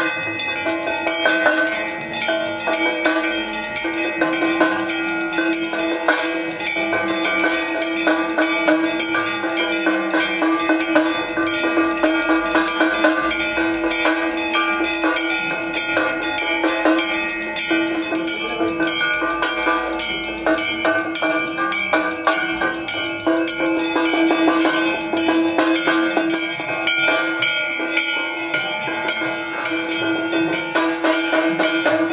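Temple bells ringing rapidly and without a break during an aarti, with a steady ringing tone held underneath.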